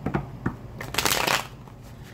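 A tarot deck being shuffled by hand: a couple of light taps, then a rapid flutter of cards lasting about half a second, about a second in.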